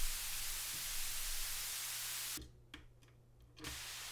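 Synthesizer white noise passed through a passive 3.5 kHz high-pass filter: a steady, thin, bright hiss with the low end stripped away. It cuts out at about two and a half seconds, leaving only a few faint clicks as the patch cable is moved, and comes back near the end through the next filter output, the band pass.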